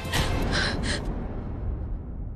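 A woman gasping: three short, sharp breaths in the first second, over a low rumble.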